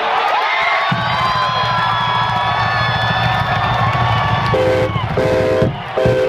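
Large stadium crowd cheering and yelling with long held shouts, loud and dense. Short stacked chords of music come in near the end.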